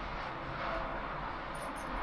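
Steady background noise of machinery from railway construction work, even and without distinct knocks or tones.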